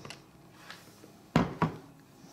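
Two sharp plastic knocks about a second and a half in, a quarter second apart, as the motor head of a Moulinex Multi Moulinette chopper is taken off its jar and set down.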